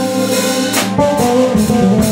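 Live blues band playing: guitars over a drum kit, with held guitar notes and a sharp drum hit a little under a second in.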